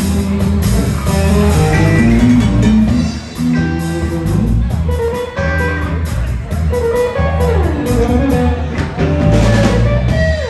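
Live band playing a blues number: electric guitar lead over electric bass and a drum kit, with no singing. About three-quarters through, a guitar line slides down in pitch.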